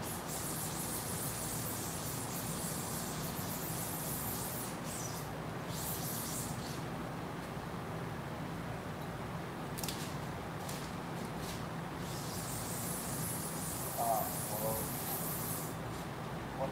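Steady low machine hum with a hiss that comes and goes, in a workshop; a faint voice is heard briefly near the end.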